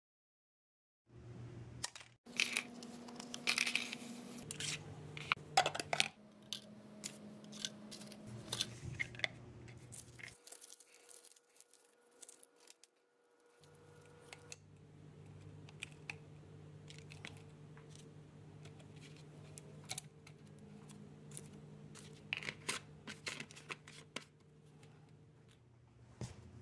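Close-up handiwork on small plastic and paper parts: scissors snipping, tape tearing, and plastic clicking and crinkling, in short bursts over a steady low room hum. It starts about a second in, after silence, and has a brief near-quiet gap near the middle.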